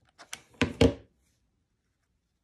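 Several short clunks and knocks within the first second as a hot glue gun is set down on the work table.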